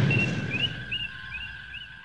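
The fading tail of an explosion sound effect dies away over a run of about five short rising chirps and a steady high tone.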